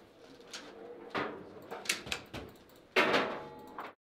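Foosball table in play: a string of sharp knocks and clacks from the ball and rods, with the loudest knock about three seconds in. The sound cuts off abruptly just before the end.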